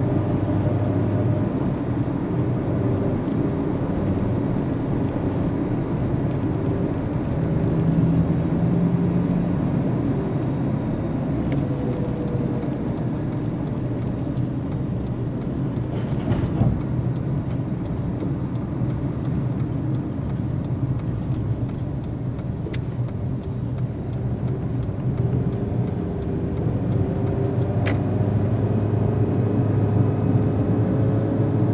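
Steady low rumble of a car being driven, heard from inside the cabin: engine and tyre noise on the road, swelling slightly near the end as it picks up speed, with a few faint ticks.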